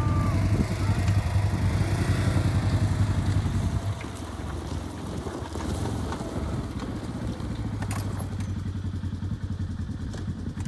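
ATV engine running steadily while towing a suspension trailer, louder for the first few seconds and then dropping to a lower level about four seconds in.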